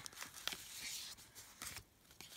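Paper and card stock rustling softly, with a few light taps, as a greeting card is slid out of its envelope and handled.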